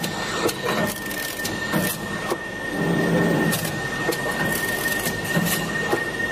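Automatic wire harness taping and cutting machine running: a steady high motor whine with irregular clicks and knocks from its mechanism.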